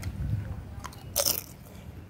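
A child chewing a mouthful of rice close to the microphone, with a few small clicks and one louder short noisy burst a little over a second in.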